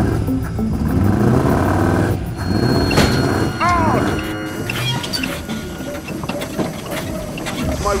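Background music over a beach buggy's engine running as the buggy rides out along a cable, with a brief arching squeal about three and a half seconds in.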